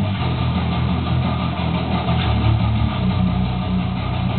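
Electric bass guitar played along to a full-band metal track, its low notes changing steadily under the band's guitars.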